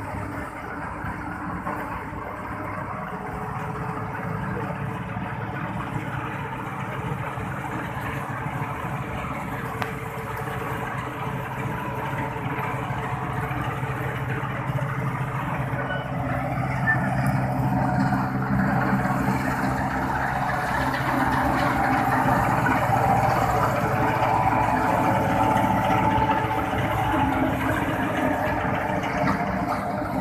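Kubota 5501 tractor's diesel engine running steadily as it powers a straw reaper, with the reaper's machinery running along with it. The sound grows steadily louder as the rig comes closer.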